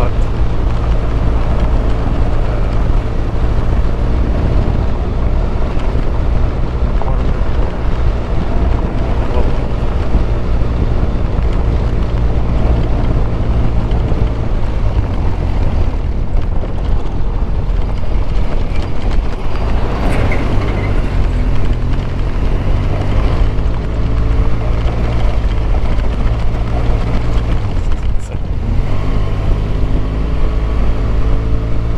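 BMW R1200GS boxer-twin motorcycle engine running at a steady road speed on a gravel track, with wind noise on the microphone. Near the end the engine note dips briefly, then climbs again.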